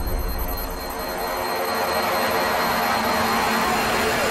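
A rushing, jet-like roar of trailer sound design that swells louder from about a second in, with faint pitched tones inside it.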